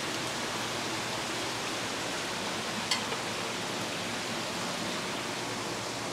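Steady hiss of aquarium aeration and water flow: air bubbling and water running through the tanks. There is one short click about three seconds in.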